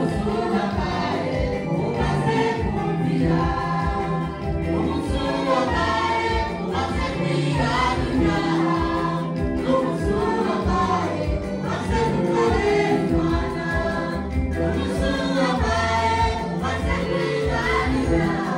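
Gospel choir of male and female voices singing together into handheld microphones, over a steady rhythmic backing beat.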